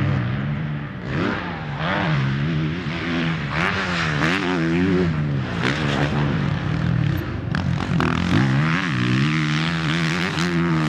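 Four-stroke Suzuki motocross bike revving hard on a dirt track, its engine note repeatedly climbing and dropping every second or so as the throttle is opened and chopped through corners and shifts.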